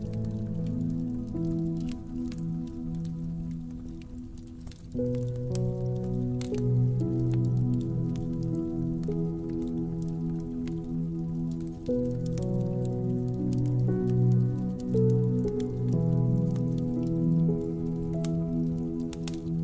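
Slow, soft piano music in long held chords, moving to new chords about five seconds in and again near twelve seconds, over the steady crackling of a wood fire.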